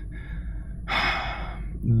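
A man's audible intake of breath, one short noisy inhale about a second in, during a pause in his talk, over a steady low electrical hum; his speech resumes at the very end.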